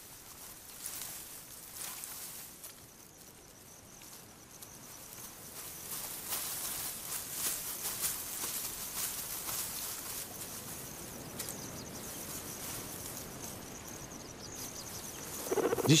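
Grassland ambience: a faint hiss with light crackles, and an insect trilling in a steady high tone that starts about two-thirds of the way through.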